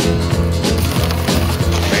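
Country song playing: an instrumental stretch with a steady bass beat between sung lines. The singing comes back in right at the end.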